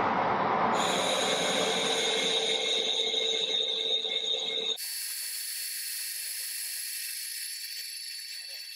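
Metal lathe taking a facing cut across a chuck back plate: a steady cutting hiss with a few steady tones over the running machine. About five seconds in it changes abruptly to a quieter, thinner, high-pitched hiss.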